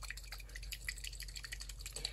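Faint, irregular small ticks and liquid taps of watery ink being stirred and dabbed in its pot.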